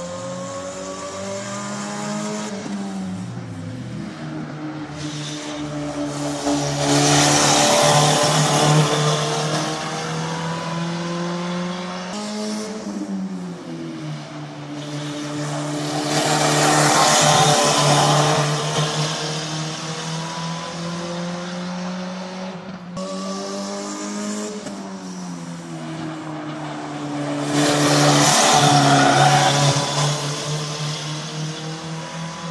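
Hatchback race car's engine revving up and down through the gears as it laps the circuit, growing loud three times, about ten seconds apart, as it passes close by.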